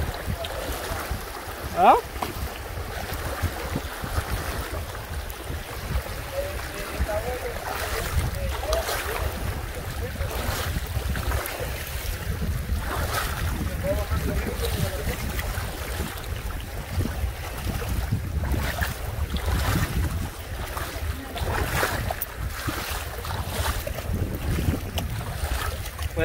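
Wind buffeting the microphone in an uneven low rumble over the steady rush of a shallow river flowing over stones.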